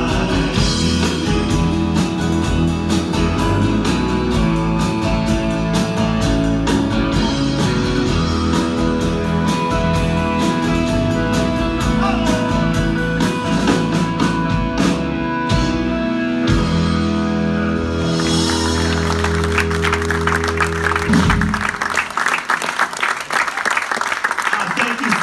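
Live band of acoustic and electric guitars, bass, drum kit and keyboards playing the instrumental ending of a song, closing on a long held final chord. Audience applause rises over the last chord and continues after it cuts off, about three-quarters of the way through.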